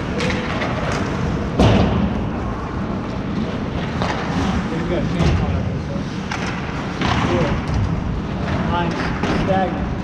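Ice hockey game in play heard from the players' bench: a steady rink din with a series of knocks and thuds from sticks, puck and boards, the loudest about a second and a half in. Players shout from the ice near the end.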